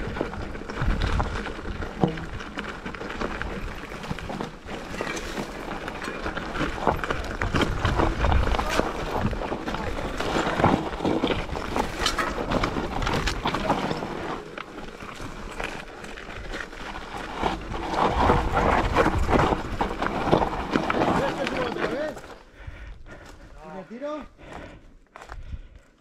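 Mountain bike descending a rocky, loose-stone dirt trail: tyres crunching over stones, with the bike and chain rattling and knocking over the bumps. The noise drops away about four seconds before the end as the bike comes to a stop.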